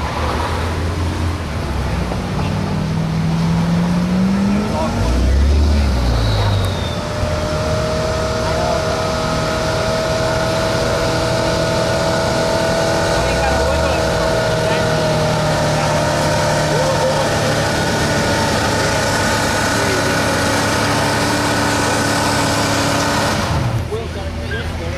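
1987 GMC pickup's gas engine revving up as it starts dragging a weight-transfer pulling sled, then held at high revs under heavy load for most of the pull, its pitch sagging slightly midway. The engine sound ends abruptly near the end.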